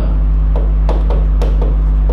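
Several sharp taps of a pen striking an interactive board's writing surface while writing, over a steady low electrical hum.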